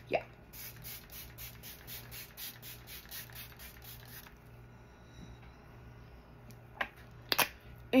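Pump bottle of matte makeup setting spray misting: a quick run of short, faint sprays at about four a second for nearly four seconds, then a few sharp clicks near the end.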